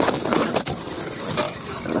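Close rustling and scraping handling noise in a string of short bursts, one of the sharpest about one and a half seconds in, as the camera is swung about.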